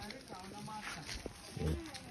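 Faint, indistinct voices of people talking nearby, with a few light taps, and a short, louder voice-like sound near the end.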